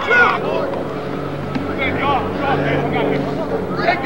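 A steady motor hum, like an engine running, under scattered voices. The hum sets in about a second in and holds until near the end.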